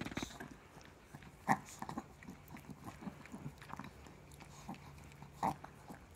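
A small dog licking a man's ear and face right at the microphone: a quick, irregular run of wet licks and mouth smacks. Two louder ones stand out, about a second and a half in and near the end.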